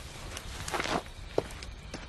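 Footsteps and clothing rustle as a person gets up and walks off, with a sharper tap about a second and a half in.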